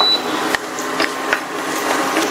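Dried red chillies sizzling in hot oil in a stainless steel kadai, a steady hiss with a few light knocks of a wooden spoon stirring them against the pan.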